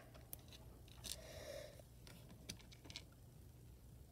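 Faint clicks and a brief rustle of small plastic Lego pieces handled by fingers, as red flower pieces are pressed onto a green plant stem.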